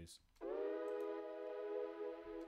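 A processed one-shot sample plays a single held pitched note rich in overtones. It starts about half a second in and sustains steadily. It runs through a noise suppressor and a delay.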